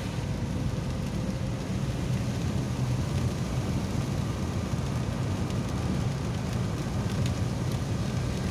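Steady noise of a car driving through heavy rain, heard from inside the cabin: rain on the car and tyres on the flooded road, with a low rumble underneath.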